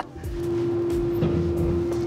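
A car's parking sensor sounding one steady unbroken tone, its warning that the car is very close to an obstacle while reversing into a tight spot. It starts just after the beginning, over a low cabin rumble.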